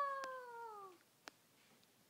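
A young girl's voice drawing out one long sung vowel that slides slowly down in pitch and fades out about a second in, followed by a couple of faint ticks.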